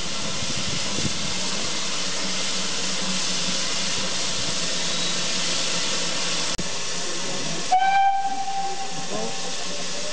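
BR Standard Class 2MT 2-6-0 steam locomotive No. 78022 moving slowly with a steady hiss of escaping steam. About eight seconds in it gives one short blast on its whistle, a single steady note lasting about half a second.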